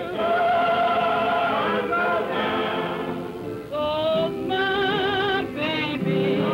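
Blues singing with a choir behind it, in long held notes with a wavering vibrato and a short break before a new phrase about two-thirds of the way through.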